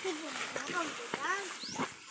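A person's voice making a few short wordless calls that rise and fall in pitch, with a faint high rising chirp near the end.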